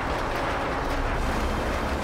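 A steady rushing, rumbling noise with a deep low end underneath: an animated-cartoon sound effect.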